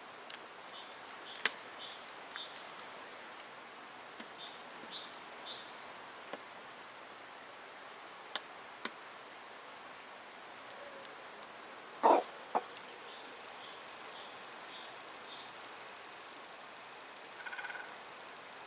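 A small songbird sings three short runs of quick, evenly repeated high two-note phrases. Chickens peck at food on a wooden feeding table, giving scattered sharp taps and two louder knocks about twelve seconds in. A short call comes near the end.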